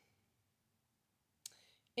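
Near silence in a pause of speech, then a brief mouth click and a short, faint intake of breath about one and a half seconds in.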